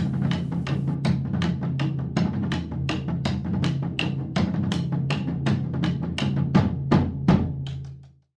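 A trio of percussionists playing drums with sticks on a shared set of drums and cymbals, a fast, even rhythm of strikes about four a second, fading out near the end.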